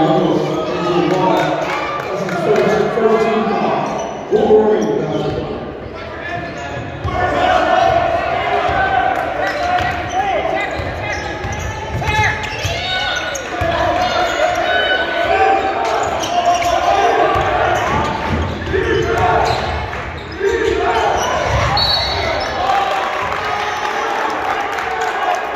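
A basketball being dribbled and bounced on a hardwood gym floor during live play, with shouting and talking from players and spectators echoing around the large gym.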